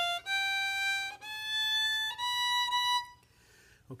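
A violin bowed on the E string plays single sustained notes, each about a second long, climbing stepwise through four notes and stopping about three seconds in. The notes demonstrate finger pattern three on the E string: half step, whole step, whole step, whole step.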